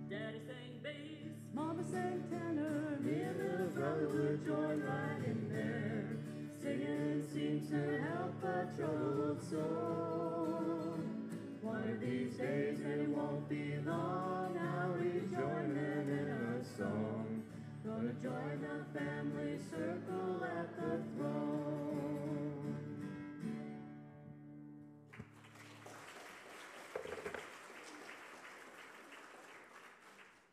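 A small vocal group singing a gospel song in harmony over sustained instrumental accompaniment. The song ends about 25 seconds in, followed by a few seconds of soft, even noise.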